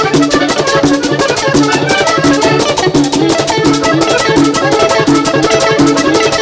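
Live vallenato band playing at a steady dance tempo: accordion, electric guitars, a repeating bass line, congas and the steady scrape of a metal guacharaca.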